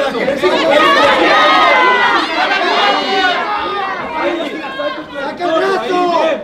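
Several voices shouting over one another: corner coaches and spectators yelling encouragement and instructions in Spanish at a fight.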